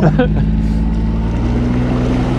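Honda four-stroke outboard motor running steadily under throttle, its note coming up right at the start, with water rushing along the inflatable boat's hull.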